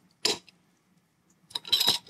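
A capped bottle of home-brewed root beer mead being opened: one short, faint release about a quarter second in with no fizz or hiss, then a few light clinks near the end. The missing hiss shows the bottle did not carbonate.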